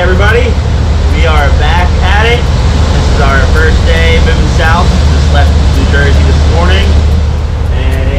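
A man talking over the steady low drone of a sportfishing boat's engines running underway.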